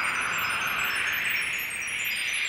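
A shimmering, wind-chime-like sound effect: a swelling hiss with many tiny, high tinkling tones scattered over it, dipping briefly near the end.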